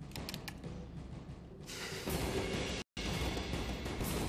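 Dramatic orchestral soundtrack music with timpani, swelling much louder about halfway through and cutting out for an instant near three seconds.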